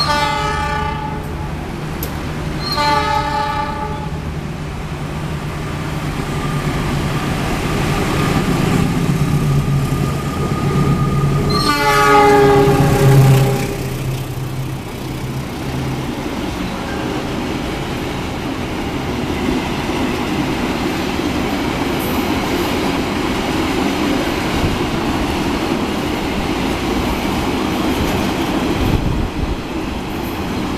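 A diesel locomotive's horn sounds three times, the last blast the longest, over the low steady hum of its engine as a freight train approaches. Later, a long string of tank wagons rolls steadily past on the adjacent track, the wheels running over the rails.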